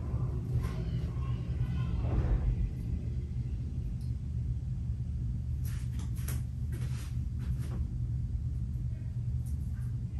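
A steady low rumble, with a few light clicks and taps about six to eight seconds in as small items are handled at a bathroom vanity.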